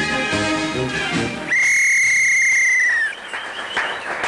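Brass-band theme music stops about a second and a half in, and a single loud whistle blast follows. The blast is held steady for about a second and a half and dips in pitch as it cuts off.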